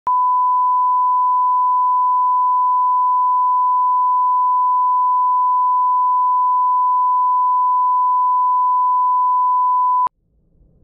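Broadcast line-up tone: a single steady 1 kHz sine wave of the kind played under SMPTE colour bars for setting audio levels, cutting off suddenly at the end.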